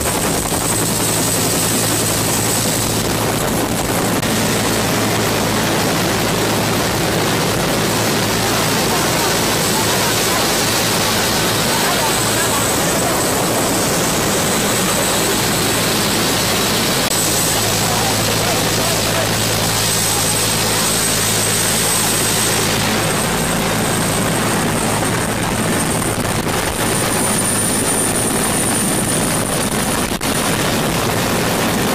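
Turbine police helicopter running on the ground, its two-bladed main rotor turning, a loud steady noise with a low hum and a thin high turbine whine that edges up in pitch near the end.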